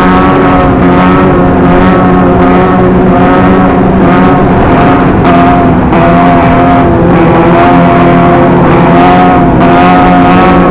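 Sport motorcycle engines running at steady high revs at freeway speed, the pitch dipping and rising slightly every second or two as the throttle is worked, over heavy wind and road noise.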